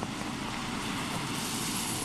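A police car driving on a wet training course: a steady rush of tyre and water-spray noise on wet pavement.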